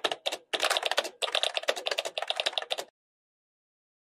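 Rapid typing on a computer keyboard: a fast run of keystrokes with two brief pauses, stopping abruptly about three seconds in.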